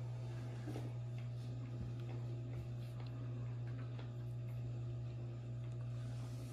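Steady low hum of a quiet kitchen, with a few faint small clicks and taps scattered through it.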